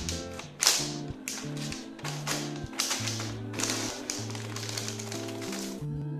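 Plastic granola bag crinkling in a run of short bursts as it is handled, stopping near the end, over background music with a steady bass line.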